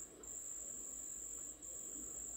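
A faint, steady, high-pitched whine over a faint low hum, cutting out briefly twice: once right at the start and again about one and a half seconds in.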